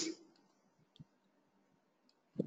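A single faint computer mouse click about a second in, amid near silence.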